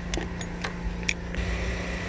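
A few faint, short metallic clicks and ticks from a Torx screwdriver working the screws of a mass airflow sensor, over a steady low background hum.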